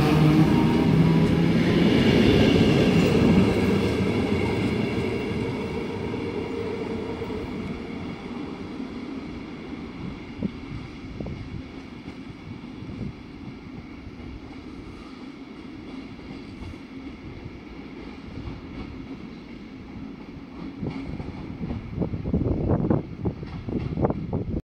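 NS Mat '64 (Plan V) electric multiple unit pulling away from the platform, its motors whining over the rumble of the wheels, the sound fading steadily as it draws off into the distance. A louder, ragged noise swells near the end.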